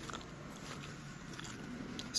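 Soft rustling and a few faint clicks of a hand stroking a kitten's fur close to the microphone, over quiet shop room tone.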